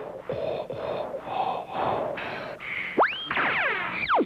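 Cartoon sound-effect snoring from a sleeping crew: a run of short, raspy breaths about twice a second. About three seconds in, a sharp whistle-like glide rises, followed by a cascade of falling tones.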